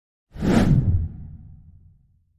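An intro whoosh sound effect that starts suddenly about a third of a second in, sweeping across a wide range, then dies away over about a second and a half into a low tail.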